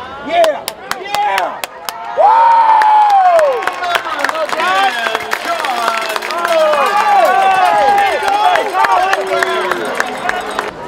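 Crowd of football spectators cheering and yelling for a touchdown, with sharp claps in the first two seconds before the cheer swells about two seconds in.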